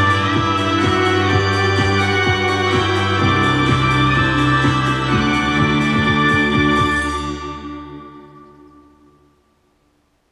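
Electronic music with sustained organ-like keyboard chords, deep bass and a steady beat, played through a home-built three-way bass horn speaker. The beat stops about seven seconds in and the music fades out to silence near the end.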